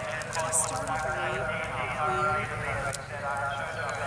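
Indistinct voices of onlookers talking, with the hoofbeats of an event horse galloping cross-country.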